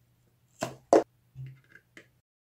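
A feather quill pushed through the wall of a paper cup: two short noisy bursts about half a second apart, the second louder, then a softer one.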